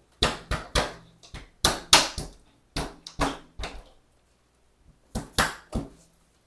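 Sharp knocks from a new vinyl replacement window being struck by hand to seat it in its frame. There are about a dozen knocks in three quick runs.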